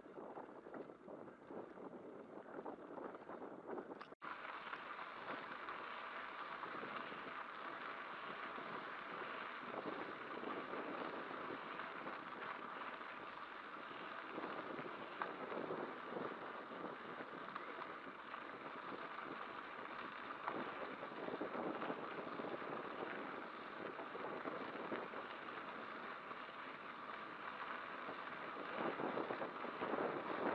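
Wind rushing over the microphone of a camera on a moving bicycle, mixed with tyre noise from the dirt and gravel track. It breaks off sharply about four seconds in, then comes back louder and stays steady.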